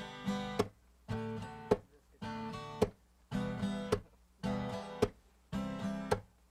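Acoustic guitar strummed in a steady rhythm: a short burst of chords repeating about once a second, each ending in a sharp accented stroke.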